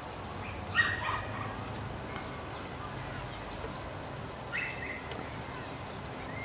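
A toddler's short high squeals: a louder one about a second in and a shorter one near the end, over a faint outdoor background.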